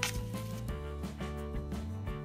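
Background music with held notes over a steady beat, with one sharp click right at the start.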